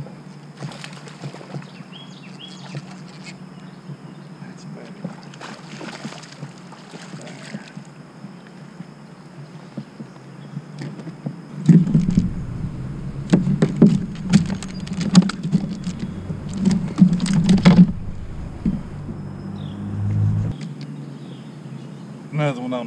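Handling noise as a smallmouth bass is landed and unhooked in a kayak. A steady low hum runs under scattered faint clicks, then about twelve seconds in come six seconds of loud, irregular knocks and rattles close to the microphone.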